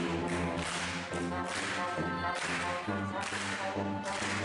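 A small brass group of trumpets, trombone and sousaphone playing a tune together, the sousaphone carrying the low notes. Sharp percussive cracks sound over the playing throughout.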